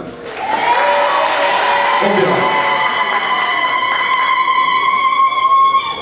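An audience applauding, with a long, high, steady tone held over the clapping that starts a moment in and stops near the end.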